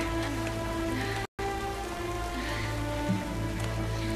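The episode's soundtrack: a steady hiss of rain under music with long held notes. The sound cuts out completely for an instant about a second in.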